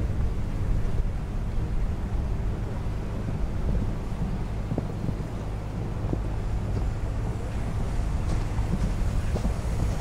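Steady low rumble of wind buffeting the camera microphone.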